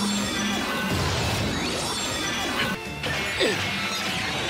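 Superhero-TV transformation sound effects over music: crashing, impact-like effects layered on a backing track as the transformation belt activates. There is a brief drop about three seconds in, then a sharp hit, the loudest moment.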